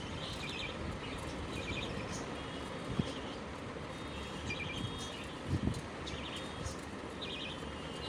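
Budgerigars chirping in short clusters of a few high notes, every second or so, over a steady background hiss. A soft knock comes about three seconds in and a low thump a little past the middle.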